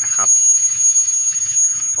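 A passenger train's brakes as it slows to a stop: a steady high-pitched squeal over a loud hiss.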